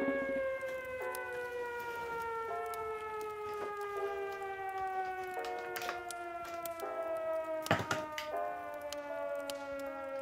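A long siren-like tone falling slowly and steadily in pitch, with short repeated musical notes over it. A few sharp clicks and knocks from the toy's cardboard packaging being handled, the loudest near the end.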